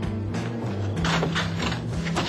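A door's lock and latch rattling and clicking as it is unlocked and opened, in quick clicks from about a second in, over soft background music with a steady bass line.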